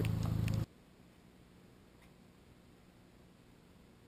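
A steady low hum that stops abruptly under a second in, leaving near silence for the rest.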